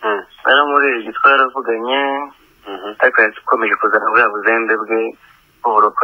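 Speech only: a voice talking, with a thin, narrow sound as over a phone line or radio, and two short pauses.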